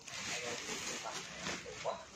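Faint voices in the background with light rustling of fabric as a pair of trousers is handled and unfolded.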